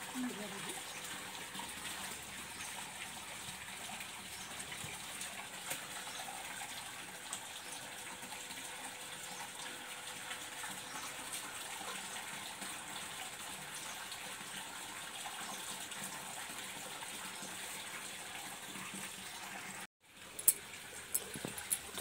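Steady, faint rushing noise, broken by a brief cut near the end.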